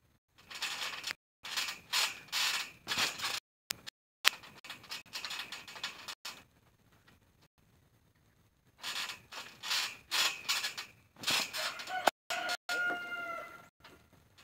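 Trampoline springs creaking and squeaking in irregular bursts as someone moves and shifts weight on the mat, with a quieter stretch midway. A longer pitched squeal comes near the end.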